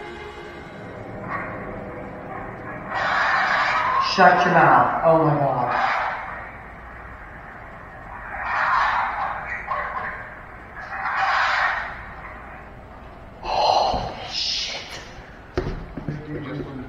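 Indistinct, muffled voices in four or five short bursts.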